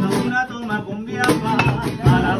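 Two acoustic guitars strumming a song with a man singing; about a second in the playing eases briefly, then comes back with sharp, loud strums.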